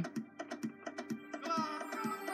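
Quick, irregular light clicks and taps of small plastic toy figures being handled and set down on a wooden tabletop, over quieter background music whose melody comes back about one and a half seconds in.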